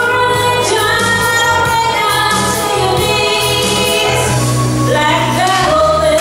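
A woman singing a slow pop song live into a handheld microphone over instrumental accompaniment with a steady bass, holding long drawn-out notes, with a rising note about five seconds in.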